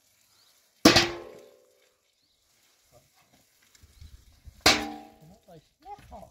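Two sharp, loud hits about four seconds apart, each followed by a short ringing tone that dies away within a second.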